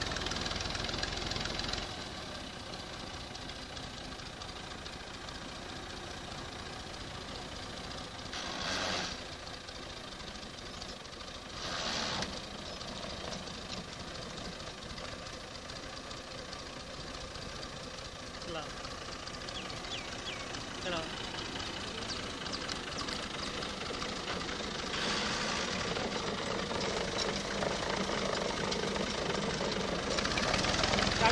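Diesel engine of an orange Fiat 480 farm tractor running steadily close by, with two brief louder bursts of noise about 9 and 12 seconds in and the engine getting louder over the last few seconds.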